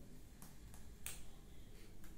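Two faint short clicks about half a second apart over quiet room tone.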